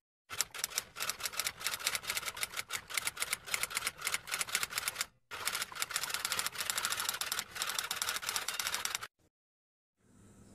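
Typewriter typing sound effect: rapid, even key clicks in two runs, one of about five seconds and one of about four, with a short break about five seconds in.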